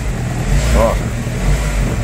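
Renault Kangoo's engine revved above idle, heard from inside the cabin: a steady low running hum. It is raised to show the gearbox rocking, which the owner puts down to worn engine and gearbox mounts.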